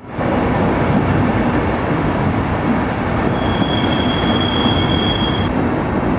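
A Deutsche Bahn long-distance passenger train rolling past along the platform: a steady rumble and rattle of the wheels on the track, with high-pitched wheel squeals held over it that come and go, one after another.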